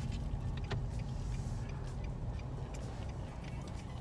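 Steady low rumble of an idling car heard inside its cabin, with a faint click about three-quarters of a second in.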